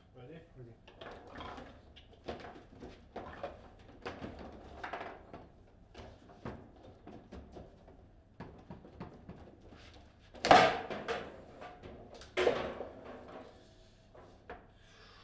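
Table football play: the hard ball is struck and passed by the plastic figures on the rods, an irregular run of sharp knocks and clacks, with two loud bangs about ten and twelve seconds in.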